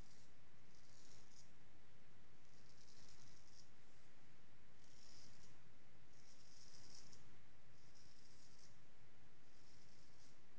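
Wade & Butcher straight razor blade scraping through three days' stubble on the neck and chin in short strokes: about six separate dry, high rasps, each under a second long.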